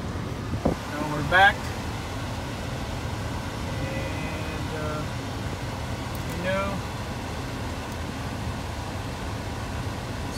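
Steady low hum inside a Toyota Camry Hybrid's cabin, with a click about a second in, a couple of short beeps near the middle as the navigation touchscreen is pressed, and brief murmured voice sounds.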